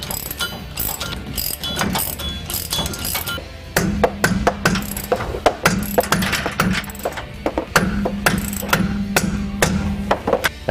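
Hand ratchet with a three-quarter-inch deep socket clicking in quick runs as nuts are run down on a sway bar's U-bolts and brackets; the clicking grows louder and denser about four seconds in.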